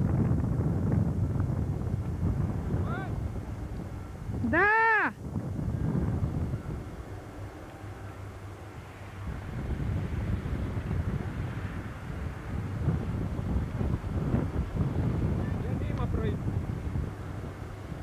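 Wind buffeting the camcorder microphone with a low outdoor rumble, plus one short pitched call that rises and falls about five seconds in.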